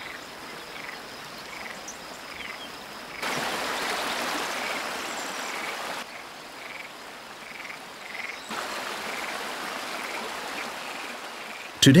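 Frogs croaking in a regular series, about one to two short calls a second, over a steady background hiss. The background gets louder about three seconds in and drops back a few seconds later.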